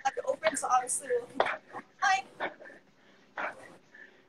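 Indistinct voice sounds with no clear words, coming in short broken bursts mixed with sharp noisy breaths, then fading near the end.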